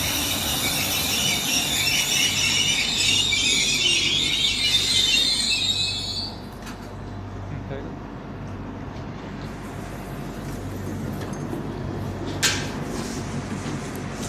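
Vy Stadler FLIRT electric train's brakes squealing in several high tones as it comes to a stop at the platform; the squeal cuts off about six seconds in. A low steady hum from the standing train follows, with one sharp click near the end.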